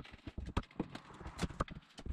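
Irregular hollow wooden knocks and clunks as old subfloor planks are pried up with a flat bar and stepped on over open joists.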